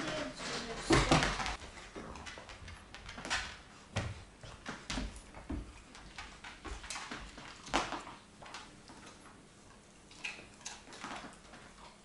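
Siberian husky puppy jumping down from a sofa onto the floor with a thump about a second in, then scattered light knocks and taps as it moves about on the laminate floor.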